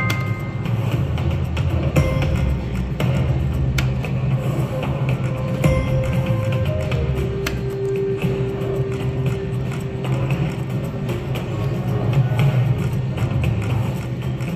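Wolf Run Eclipse video slot machine playing its game music through several reel spins, with a brief win chime at the start.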